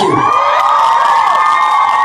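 A concert crowd screaming and cheering loudly, many high-pitched voices held together in one long, sustained scream.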